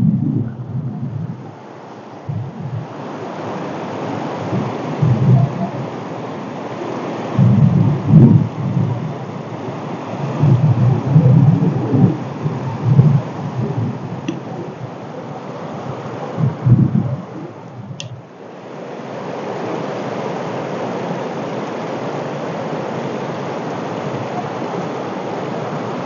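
Arkansas River running fast over a shallow, rocky riffle: a steady rushing of water. Through the first two thirds it comes with irregular low rumbles of wind buffeting the microphone, then settles into an even rush.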